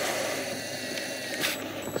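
Small electric wakasagi reel winding in line, a thin steady motor whine, with a brief louder rustle about one and a half seconds in.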